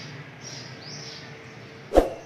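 Quiet background hiss with a few faint high chirps about half a second to a second in, then a single sharp knock just before the end.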